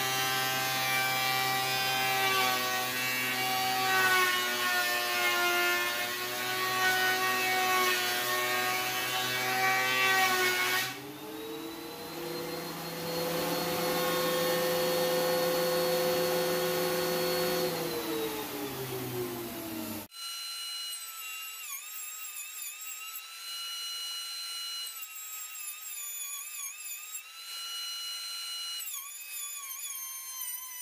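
Ridgid R4330 13-inch benchtop thickness planer cutting maple boards: a loud motor and cutterhead whine under load, its pitch wavering as the cut varies. About a third of the way in the load eases and a steadier, higher whine holds, sagging in pitch again before the sound cuts off abruptly to a thinner, higher, wavering whine.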